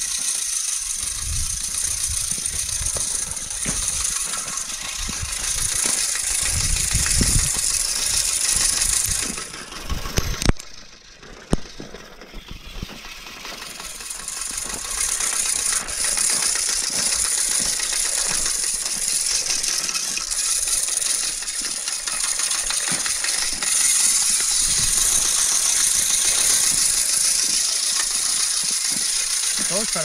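Hand-cranked Cyclone bag seed spreader broadcasting wheat seed: a steady gear rattle and whir from the spinning spreader as it is cranked while walking. It stops briefly about ten seconds in, with a couple of clicks, then carries on.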